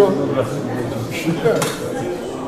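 Indistinct talk with two short, sharp clinks of hard objects being handled, one right at the start and one about one and a half seconds in.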